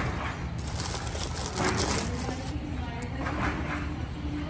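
Water splashing and churning as a large alligator thrashes and turns away at the surface, loudest for about two seconds starting half a second in, over a steady low rumble and faint voices.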